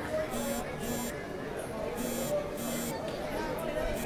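A buzzer sounding four short buzzes in two pairs, each a steady low tone with a harsh, hissy edge, over crowd chatter.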